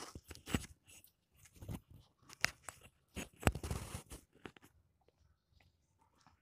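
A metal spoon scraping and knocking against an aluminium handi as chicken and potatoes are spread into a biryani layer: a quick run of short scrapes and clinks that stops about five seconds in.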